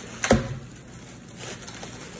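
Thin plastic packaging bag crinkling and rustling as a plastic ladle is unwrapped, with one sharp click about a third of a second in.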